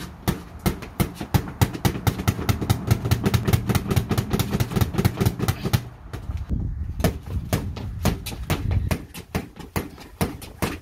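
Boxing gloves hitting a freestanding punching bag in fast combinations, several thuds a second, with a short let-up about six seconds in. A low rumble runs underneath through much of it.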